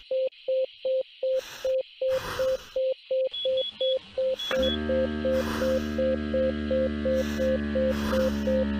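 Simulated heart monitor beeping at a pulse of 180, about three beeps a second, the sign of a fast tachycardia. A few quick higher beeps sound a little past the middle, and from just past halfway a steady low drone with several tones runs under the beeping.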